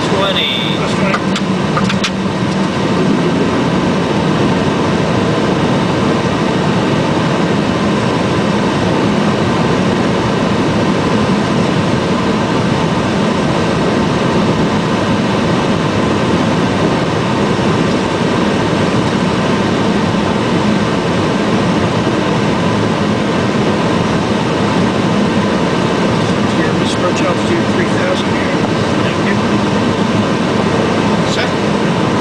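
Steady rushing air from the cockpit window defogger on a Boeing 757-200ER flight deck, at an even level.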